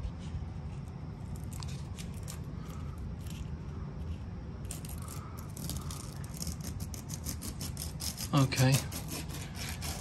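Faint handling noise: light clicks and rustles as a thin trimmed-off strip of grasscloth and tape is handled close to the microphone, over a low steady hum, with a brief spoken sound about eight and a half seconds in.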